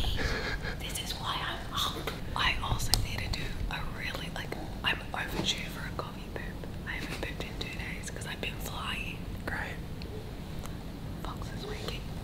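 A man and a woman whispering to each other in short, quick exchanges.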